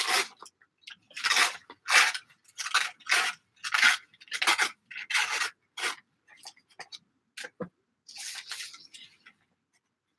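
Thin printed paper torn along the edge of a metal ruler in a series of short rips, a little under two a second, followed near the end by a longer rustle as the torn strip is lifted and handled.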